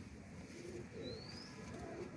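Faint domestic pigeons cooing, with a short rising chirp about a second in.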